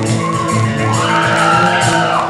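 Heavy metal band playing live, heard from the audience, with a sustained high note that swells and bends upward about halfway through, then falls away near the end.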